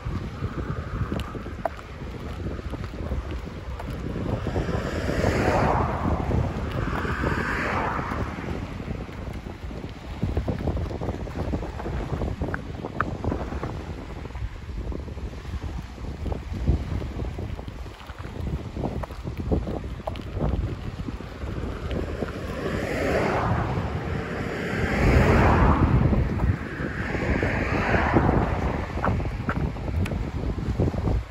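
Wind buffeting the microphone with a steady low rumble, over small waves washing onto the lake's gravel shore. Louder rushing swells rise and fall about five seconds in and again past the twenty-second mark.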